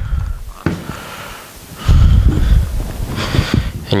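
Handling noise from working a goggle quick strap into the goggle's plastic outrigger close to the microphone: a low rumble that swells loudest in the middle, with a couple of light clicks, the last near the end as the strap snaps into place.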